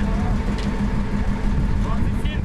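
An engine running steadily, with a low rumble and a constant hum, and people talking faintly over it.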